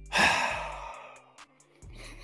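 A woman's long, breathy sigh that starts loud and fades away over about a second, with low background music notes underneath.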